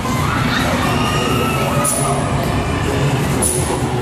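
Many children shouting and calling at once, a steady crowd din with no single voice standing out.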